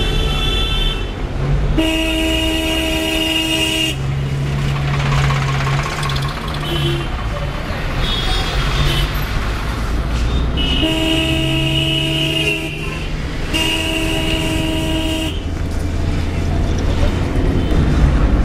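Vehicle horn sounding three long blasts of about two seconds each, the first about two seconds in and two more close together past the middle, over the steady rumble and road noise of a moving vehicle.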